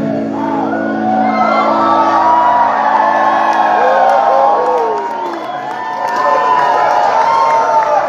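Live rock band playing through the hall's PA in a break between sung lines, electric guitar to the fore, with the audience whooping and cheering over the music.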